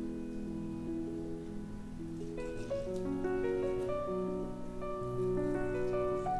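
Calm instrumental background music of held, overlapping keyboard-like notes, growing busier with higher notes from about two seconds in.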